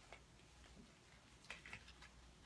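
Near silence: quiet room tone with a few faint clicks, one just after the start and three close together about a second and a half in.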